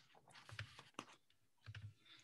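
Near silence broken by a handful of faint clicks and taps, the sharpest about a second in.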